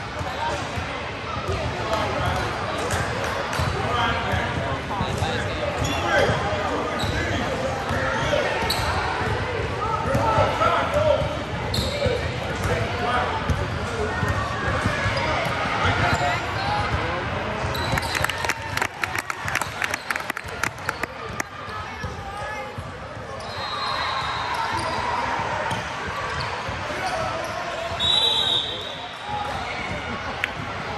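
Basketball being dribbled and bounced on a hardwood court, with indistinct shouting from players and spectators echoing in a large gym hall.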